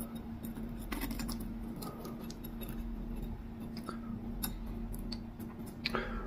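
Metal fork prodding and scraping through the crisp grilled top of corned beef hash in a glass baking dish: scattered faint clicks and ticks. A faint steady hum sits underneath.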